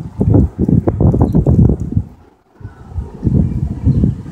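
Wind buffeting a phone's microphone: dense, irregular low rumbles and thuds, with a brief lull about halfway through.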